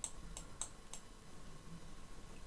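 A few faint clicks, about four in the first second, then quiet room tone.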